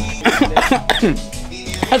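A man coughing, over background music.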